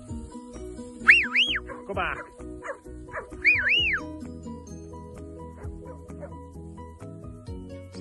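Shepherd's whistle commands to a working sheepdog: a pair of quick rising-and-falling whistled notes about a second in, and the same pair again a couple of seconds later, over steady background music.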